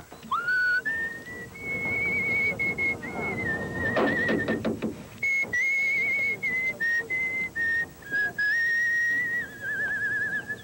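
A person whistling a slow tune: long held notes with a wavering vibrato, stepping between a few pitches. A few short clicks come about four to five seconds in.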